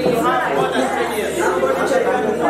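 Several people talking at once in a room: overlapping chatter with no single clear voice.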